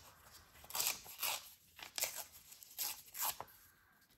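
Paper being torn by hand in several short rips, peeling back the top page of a small folded paper booklet to leave a ragged, torn edge. The rips die away near the end.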